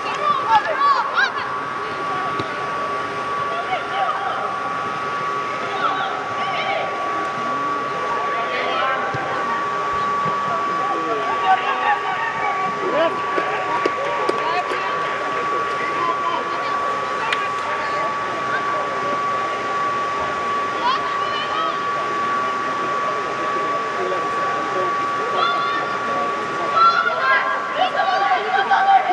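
Scattered shouts and calls of young players during a football match, echoing under a large air-supported dome, over a constant hum with a steady whine, typical of the blower fans that keep such a dome inflated.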